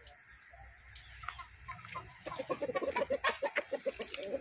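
Chicken clucking: a rapid, even run of short clucks, about seven a second, starting about halfway through and growing louder.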